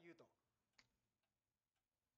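Near silence: a spoken line ends just after the start, then a few faint clicks.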